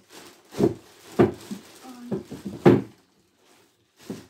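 Thin plastic shopping bag rustling and crinkling as hands rummage through it, with three sharper crinkles in the first three seconds.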